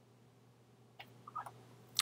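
Near silence, broken by a faint sharp click about a second in and a short faint sound just after.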